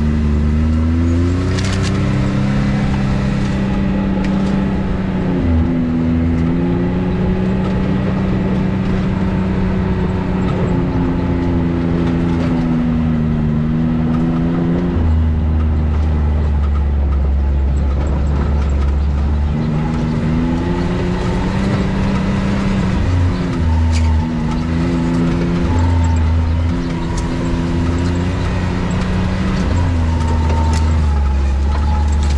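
Side-by-side UTV engine running under load, its note rising and falling several times with a few sudden jumps in pitch as the throttle is worked, over a heavy low rumble.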